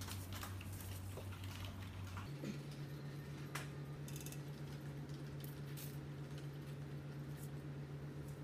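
Soft rustles and light ticks of hands handling and arranging raw dough noodle strands on a floured paper sheet on a desk, over a steady low room hum.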